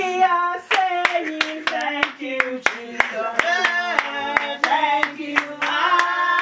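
A group of voices singing a repetitive song, with handclaps in time at about three a second.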